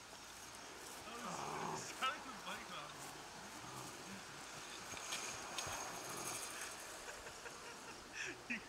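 Faint, distant voices of teenagers talking and calling, with one sharp click about two seconds in.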